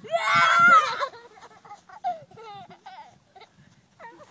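A child's loud, high-pitched wordless yell or scream lasting about a second, followed by a few short, fainter vocal sounds.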